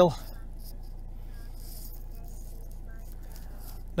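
Steady low hum inside a small car's cabin, even throughout, with no distinct knocks or other events.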